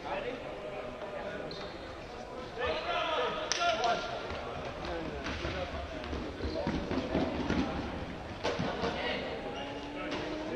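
Players' footsteps thudding on a wooden sports-hall floor during indoor ultimate frisbee play, ringing in the large hall. Two sharp knocks stand out, about three and a half and eight and a half seconds in.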